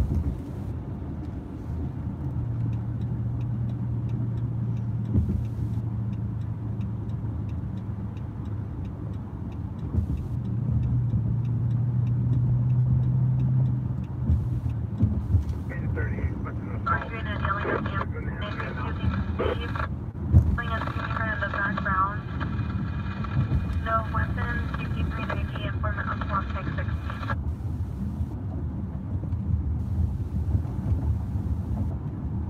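Car cabin noise while cruising on a freeway: a steady road rumble with a low engine drone that rises a little about ten seconds in. From about sixteen seconds a thin, tinny voice transmission from a radio scanner plays over it for about ten seconds.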